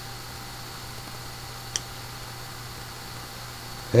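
Steady low electrical hum under a faint hiss of room noise, with one faint click a little before halfway.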